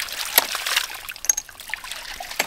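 A 1-inch hydraulic ram pump being started back up: water splashes and spills from its waste valve, with sharp clacks about once a second. Fresh air in the pressure tank is cushioning the water hammer, so the pump is not hitting hard.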